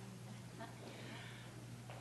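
Faint room tone with a steady low hum.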